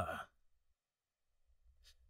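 A man's voice trailing off with a falling sigh, then near silence on the dubbed soundtrack, broken only by a faint short breath near the end.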